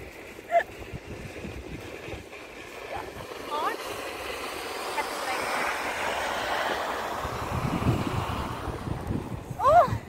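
Wind buffeting the microphone, building through the middle with some low rumble, and a woman's short high-pitched cry just before the end.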